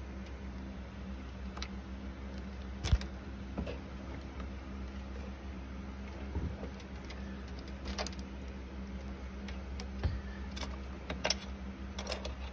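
A handful of light metallic clicks and rattles as hydraulic line fittings are handled and pulled from the valve block of a Mercedes SL500 R230's convertible-top hydraulic system, the sharpest click about three seconds in, over a steady low hum.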